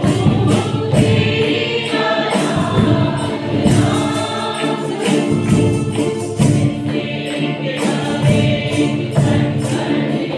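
Mixed church choir of women and men singing a worship song together, with a steady beat running under the voices.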